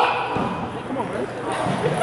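Indistinct voices of people talking in a gym hall.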